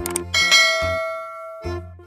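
Subscribe-animation sound effects: a couple of quick mouse clicks, then a bright notification-bell ding that rings out and fades over about a second, over short low bass notes of background music.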